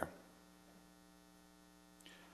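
Faint steady electrical hum, close to near silence: mains hum carried through the microphone and sound system.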